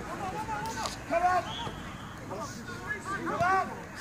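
Players' voices shouting and calling to one another across an outdoor football pitch during play.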